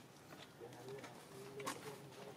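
A bird calling faintly in the background: a few short, low, pitched notes. A sharp click about one and a half seconds in is the loudest moment.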